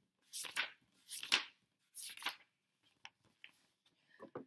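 Pages of a paper picture book being flipped by hand: three rustling swishes of paper, followed by a few faint light ticks near the end.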